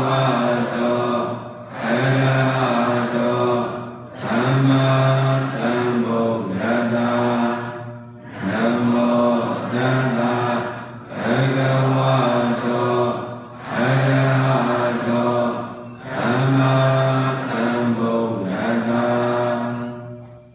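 A Buddhist monk chanting Pali verses in long held notes, in phrases of about two seconds with a short break between each.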